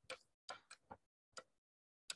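A few faint, short clicks at irregular spacing, about five in two seconds: a computer mouse button being clicked as lines are drawn with the mouse.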